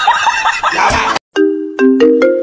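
A cartoon character laughing in a fast, high cackle that cuts off just after a second in. A moment later a chiming melody of steady bell-like notes begins.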